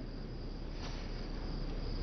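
Crickets chirping steadily in the background: a night ambience.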